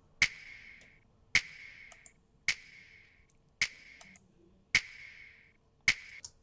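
Soloed hip-hop finger-snap sample playing back: six crisp snaps a little over a second apart, each with a short ringing tail. The snaps have a mid-range boost around 800 Hz from an EQ84 British-console-style EQ to give them more body.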